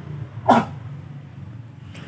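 A single short yelp rising in pitch, about half a second in, over a faint low steady hum.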